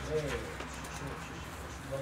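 Steady low room hum during a pause, with a brief faint pitched sound just after the start.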